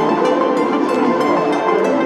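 Background music with held chords and a moving melody.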